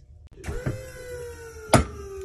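Motor of the pull-test rig whining under load, its pitch sagging slowly as the force builds, then a single sharp crack about three-quarters of the way in as the homemade Dyneema soft-shackle cave anchor breaks at about 23.5 kN.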